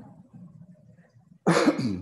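A man coughs to clear his throat, sudden and loud about one and a half seconds in, after a stretch of faint low room sound.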